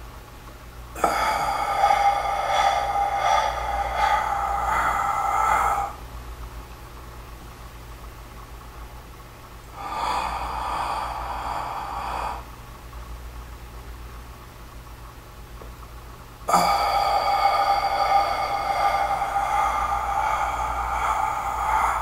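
A man taking slow, deep, audible breaths as a breathing exercise. There is a long breath of about five seconds, a shorter and softer one some four seconds later, and another long one starting about sixteen seconds in, with quiet pauses between them.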